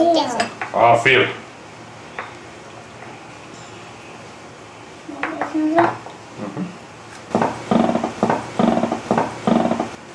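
Spoon and small bowls clinking as dough is scooped and knocked into the bowls, a quick run of knocks about seven seconds in after a few scattered clinks earlier.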